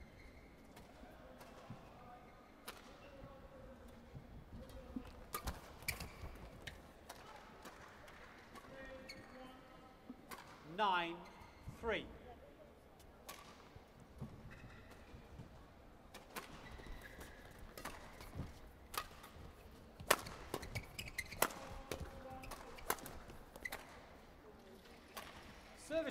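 Badminton racket strokes on a feather shuttlecock during women's doubles rallies, each stroke a sharp, isolated crack, irregularly spaced through the rallies. Two short high-pitched squeals stand out near the middle, over a steady murmur of the arena.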